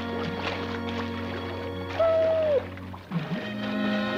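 Background music with sustained notes, and a dog's high whine about two seconds in that drops in pitch as it ends.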